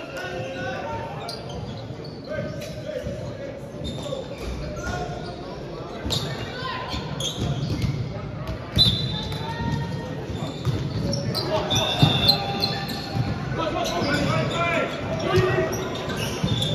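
Echoing sports-hall sound of an indoor volleyball game: players' voices calling and chatting, with a volleyball bouncing on the hardwood court and being hit, the sharpest hits about 9 and 12 seconds in.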